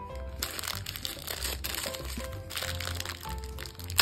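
Crinkling of a thin plastic bag being unwrapped by hand, with a sharp crackle at the very end, over light, old-time silent-film-style background music.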